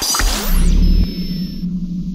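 Electronic logo-intro sound effect: a heavy deep bass hit with gliding synthetic sweeps, settling after about a second into a held low synth drone with a thin high tone above it.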